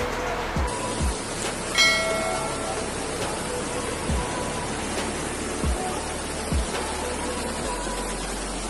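Steady rushing of muddy floodwater under overlaid music. The music has a few deep bass booms that drop in pitch and a short bell-like chime about two seconds in.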